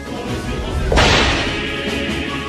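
Choral backing music, cut into about a second in by a sudden loud noisy hit sound effect that fades away over about half a second.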